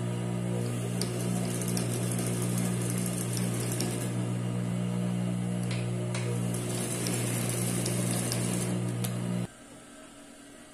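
Mitsubishi industrial sewing machine stitching a seam through layers of cloth and non-woven mask fabric: a steady motor hum with the rapid rattle of the needle mechanism, cutting off suddenly near the end.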